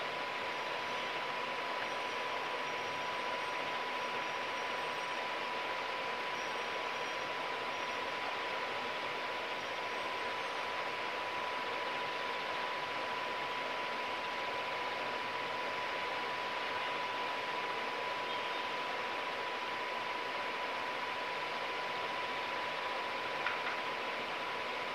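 3D holographic LED fan display spinning at speed: a steady whirring rush of air with a constant high-pitched whine, and a small click near the end.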